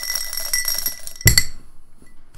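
Dice rattling fast inside a clear cup as it is shaken, with a bright clinking ring. Then a single loud knock about a second and a quarter in as the dice are thrown onto the table.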